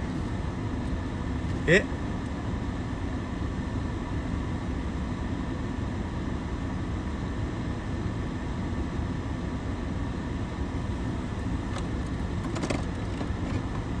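Steady low rumble of a stationary car, heard from inside its cabin, with one short voice sound about two seconds in.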